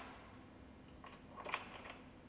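A few faint metallic clicks of line-array rigging hardware as safety pins are pushed into the links of the lower loudspeaker boxes, bunched together about a second and a half in.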